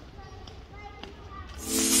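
Faint, distant voices in a short lull in the background music. A pop song then comes back in loudly about a second and a half in.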